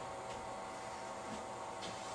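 Faint steady hiss and hum of room tone, with no distinct sound standing out.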